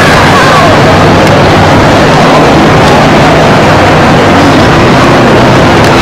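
Loud, steady din of a large, crowded exhibition hall, recorded so hot that it sounds distorted and rumbling, with no distinct event standing out.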